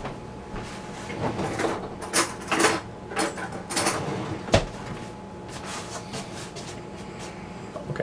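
Kitchen drawer and cupboard noises as a spoon is fetched: a string of short clattering knocks and scrapes, with one sharper thump a little past halfway.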